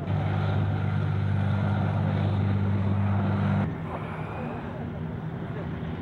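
A vehicle engine running with a steady low drone that stops abruptly at a cut about three and a half seconds in. A quieter, fainter engine rumble follows.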